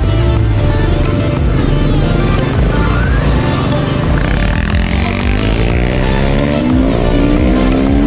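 Background music over an enduro motorcycle's engine accelerating. About halfway through, the engine note climbs, drops and climbs again a few times as it pulls up through the gears.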